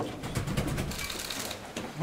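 Banging on a locked door: a quick, uneven run of sharp knocks, thickest in the first second.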